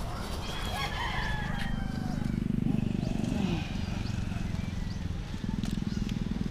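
A rooster crows in the first two seconds, then a low steady hum sets in and carries on.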